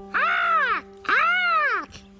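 Two gull-like squawking calls, each rising then falling in pitch and lasting about two-thirds of a second, voiced for a puppet as seagull cries. A steady held background tone sounds underneath.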